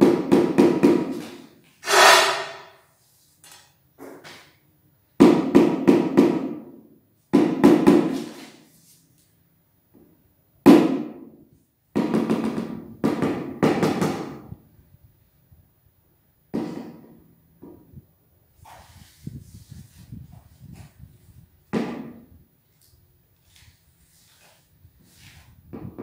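Rubber mallet tapping a large porcelain floor tile down into its bed of mortar, setting it level and in line: short runs of quick knocks with pauses between, one strong single knock a little before the middle, and fainter taps in the second half.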